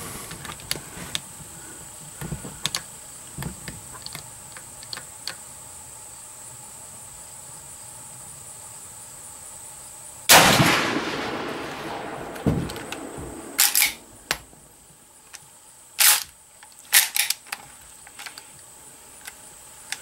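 A single shot from a Winchester Model 94 lever-action rifle about halfway through, the loudest sound, with a long echoing tail. Over the next several seconds come a few sharp metallic clacks as the lever is worked to eject the spent case.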